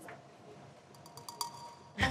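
Quiet pause with a few faint ticks and a brief metallic clink ringing about a second in.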